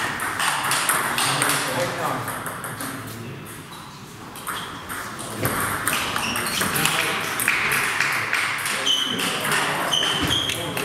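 Table tennis ball clicking off bats and table in a rally, the hits coming quick and irregular from about five and a half seconds in, after a quieter lull, in an echoing sports hall.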